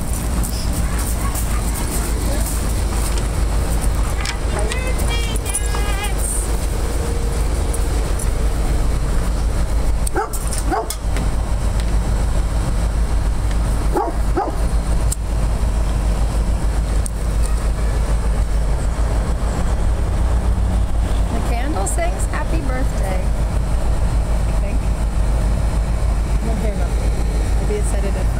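Dogs whining and yipping now and then over a steady low rumble, with a couple of knocks partway through.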